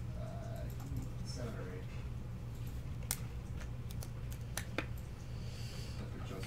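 Scattered light clicks and taps of trading cards and plastic card sleeves being handled on a desk, a few sharp ones about three to five seconds in, over a steady low hum.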